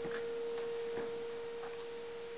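A single steady pure tone held at one pitch, with a few soft clicks over it.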